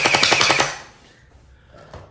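Electric gel blaster firing on full auto: a rapid, even train of clicks, about thirteen a second, over a steady high motor whine, cutting off suddenly under a second in.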